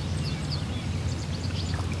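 Outdoor ambience: a steady low rumble with a few faint, brief bird chirps.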